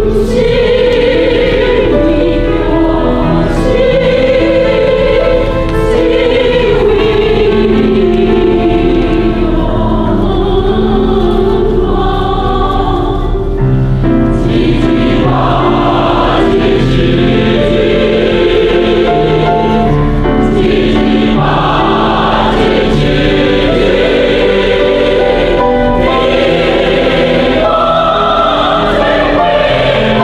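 Mixed choir of men and women singing together, loud and sustained.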